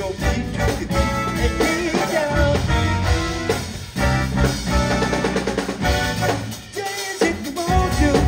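Live funk-jazz band music: electric bass and drum kit holding a steady groove with a melodic line above. The bass and drums drop out briefly near the end, then come back in.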